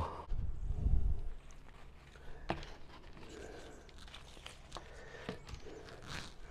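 Potting soil being scooped out of a plastic bucket and filled in around a plant in a terracotta pot: a rustling scrape, loudest in the first second or so, then a few light clicks and taps.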